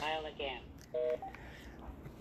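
A cordless phone on speakerphone: the last words of a recorded 'not in service' intercept message, then about a second in a single short two-note telephone tone through the handset speaker, the call having failed because the number is disconnected.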